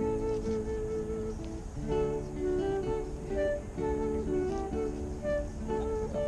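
Instrumental music: a slow melody of held notes over chords, with no voices.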